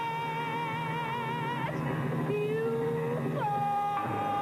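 A woman singing a show tune in long held notes with vibrato over an instrumental accompaniment: a high note held for the first second and a half, a lower rising phrase, then a slide down onto another held note near the end.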